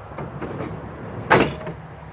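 A single sharp knock about a second and a half in, over a low steady rumble.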